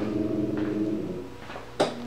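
A steady low hum that fades about a second in, then a single sharp click near the end.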